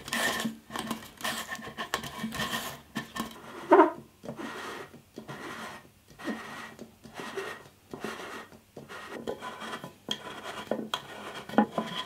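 Light, irregular handling sounds of a steel beer can being turned on a wooden workbench against a marker pen, with tape rustling and the can rubbing and scraping. One short louder knock comes about four seconds in.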